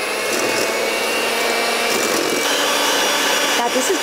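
Electric hand mixer running, its beaters whisking egg yolks and sugar in a stainless steel bowl. It gives a steady motor whine whose pitch shifts about two seconds in.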